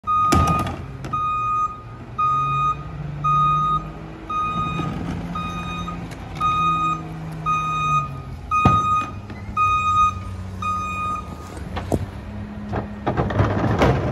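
Mack rear-loader garbage truck backing up, its reverse alarm beeping about once a second over the engine, which rises and falls in pitch. The beeping stops about eleven seconds in, with a couple of sharp knocks and a short burst of clatter near the end.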